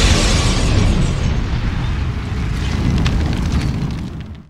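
Intro logo sound effect: a deep fiery boom that keeps rumbling with a crackle of flames and slowly dies away, fading near the end.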